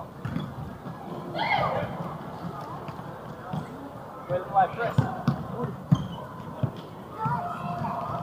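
A futsal game in a sports hall: shouting voices, and the futsal ball being kicked and bouncing on the wooden court, with several sharp knocks between about four and a half and seven seconds in.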